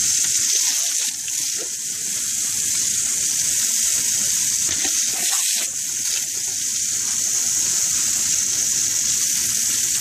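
Garden hose jet spraying onto concrete paving slabs: a steady hiss of splashing water that dips briefly twice as a Great Dane bites and snaps at the stream.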